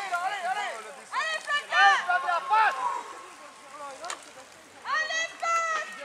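High-pitched voices shouting and calling out in bursts, typical of spectators cheering on riders, with a single sharp click a little after four seconds in.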